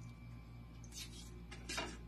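Two short, faint scrapes of a utensil spreading butter on bread, about a second in and near the end, over a low steady hum.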